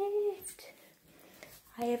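A young person's voice holding a short, wordless whimpering note that stops about half a second in, followed by quiet before speech begins near the end.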